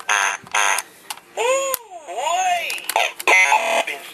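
Electronic talking toy's security alarm: a buzzing electronic tone, then two rising-and-falling siren whoops, then another buzz, sounding because an intruder has been detected and the secret code has not been entered.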